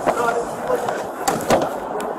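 Handling noise from a padded vinyl seat cushion being lifted and set back down on a boat bench: a sharp knock at the start and two more close together about a second and a half in, the last the loudest.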